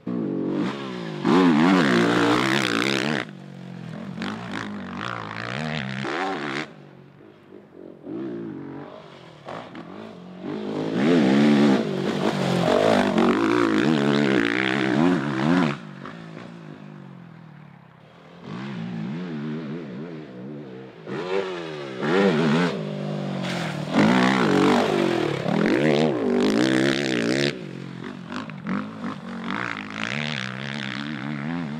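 Honda TRX250R two-stroke quad engine revved hard and eased off again and again as it is ridden round a rough track, its pitch climbing and falling, with loud bursts of throttle and quieter stretches between.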